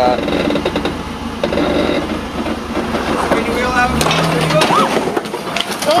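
Indistinct voices and exclamations over the low rumble of a vehicle engine, which drops away about four seconds in.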